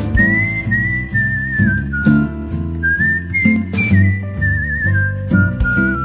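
A whistled melody, one clear line that steps and glides between notes and wavers here and there, over acoustic guitar and band accompaniment.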